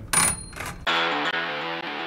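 A short metallic ring, as of a small brass bell struck once. Plucked-guitar intro music with stepping notes starts just under a second in.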